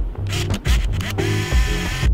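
Olympus mju-II 35mm compact film camera firing: a short shutter click about a third of a second in, then the motor winding the film on with a buzzing whir for most of the last second. A steady beat of background music runs underneath.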